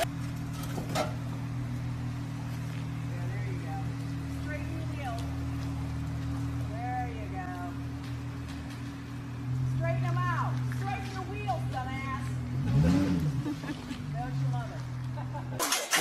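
Jeep Wrangler's engine running steadily at low speed, briefly louder twice in the second half, with indistinct voices over it.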